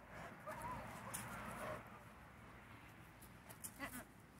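White German Shepherd whining, a few short wavering high whines in the first two seconds, with a few sharp clicks later on.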